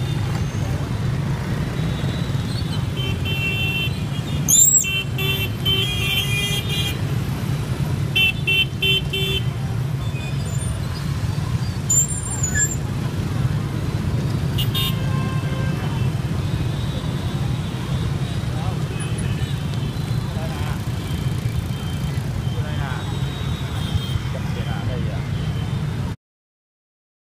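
Dense motorbike and car traffic running steadily, with vehicle horns beeping in several short clusters during the first ten seconds or so and once more near the middle.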